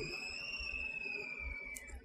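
A faint, steady high-pitched whistling tone that rises slightly in pitch and then falls, fading out just before the end.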